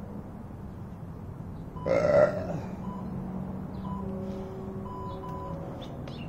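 A man's single short, loud throaty vocal sound about two seconds in, from the exerciser catching his breath between sets, over faint steady tones in the background.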